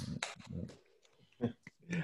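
Short, broken fragments of voices over a video call, with a near-silent gap of about half a second in the middle.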